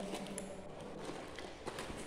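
A few light, scattered taps and clicks from objects being handled, over faint background hiss.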